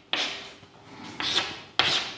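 Chalk writing on a blackboard: three short strokes of chalk rubbing across the board, one just after the start, one past a second in and one near the end.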